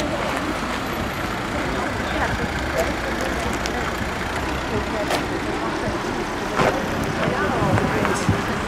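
Steady road traffic noise from cars driving past on a city street, with a few faint clicks.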